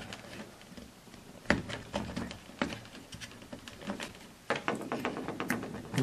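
Scattered light clicks and taps of the rotating beacon's reflector being unclipped and lifted off its plastic base: a sharp click about a second and a half in, and a quick run of ticks near the end.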